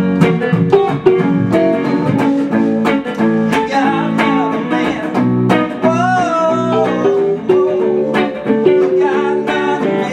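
Electric guitar and keyboard playing a rock song's bridge together in a rehearsal, with a short sung line about six seconds in.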